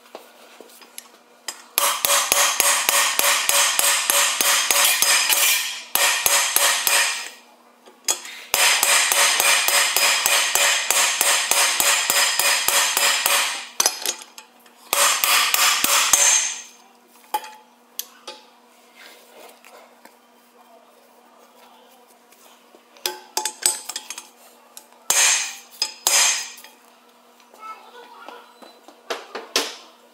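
Rapid hammering on a steel bearing-race driver, seating the pinion bearing race over its shims in a cast-iron Dana 44 axle housing. Three long runs of fast, evenly spaced metallic strikes, several a second, then a few separate knocks near the end.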